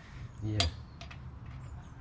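A faint metallic click of a hand tool on a small motorcycle suspension part during a bush replacement, with a brief spoken 'yeah'.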